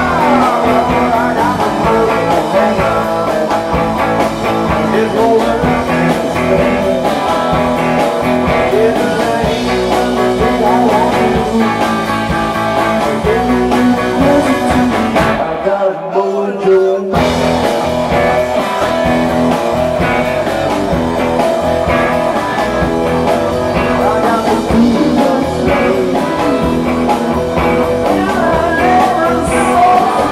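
Live rock and roll band playing, with electric guitar and electric bass. About two-thirds of the way through, the band stops for about a second and a half while a single held note rings on, then comes back in.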